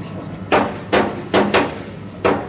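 Four sharp percussive strikes in an uneven rhythm, the last two close together, part of a repeating beat.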